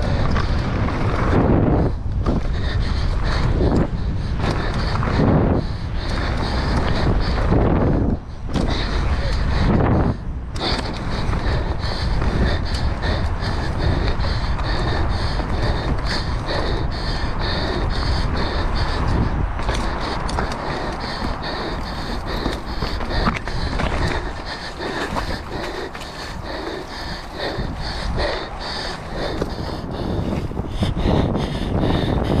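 Mountain bike ridden fast down a dirt jump trail: wind buffeting the camera microphone, with tyres and the bike's chain and frame rattling over the dirt and frequent knocks from bumps and landings. The noise drops briefly a few times, around 2, 8 and 10 seconds in.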